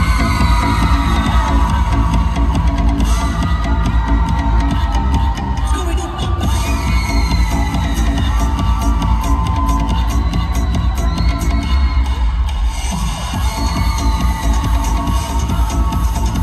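Up-tempo disco dance music with a heavy bass beat played over an arena's loudspeakers, with the crowd cheering and whooping over it.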